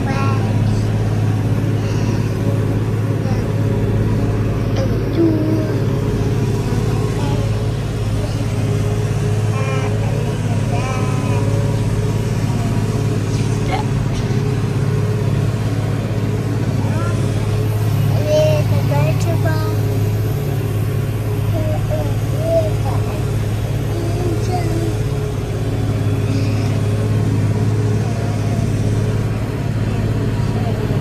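Steady, loud drone of a forage harvester (maize chopper) working alongside, mixed with the Massey Ferguson tractor's engine, heard from inside the tractor cab.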